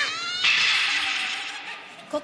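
A startled, high-pitched cry from cartoon girls, rising in pitch, followed by a hissing noise that fades away over about a second.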